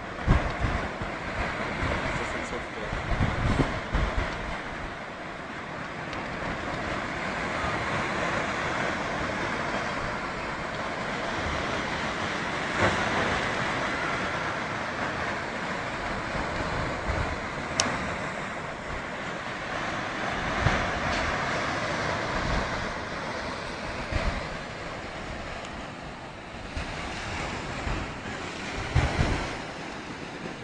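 Ocean surf: waves washing ashore as a steady rushing noise, with low buffeting from wind on the microphone near the start and again near the end.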